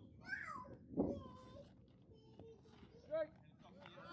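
Scattered voices of young players and spectators at a youth baseball game. About a second in there is a single sharp thump as the pitched ball reaches the plate and gets past the catcher into the dirt, and a short high-pitched shout comes near the end.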